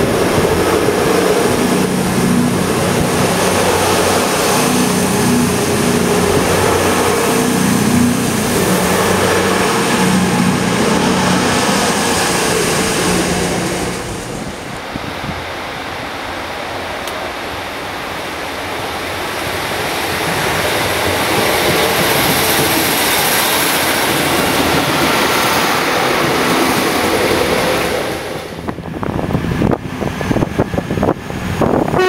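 Voyager diesel multiple unit's underfloor diesel engines running with a steady hum as the train moves close past the platform, for about the first half. Then a quieter, even rumble of trains approaching through the station, swelling again towards the end, with a run of sharp clicks at the very end.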